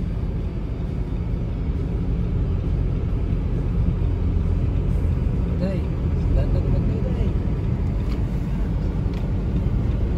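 Car cabin noise while driving at road speed: a steady low rumble of tyres and engine heard from inside the car.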